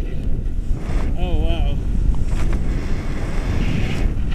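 Wind rumbling over the camera microphone as a tandem paraglider launches off the snow and becomes airborne, with one short wavering vocal call a little over a second in.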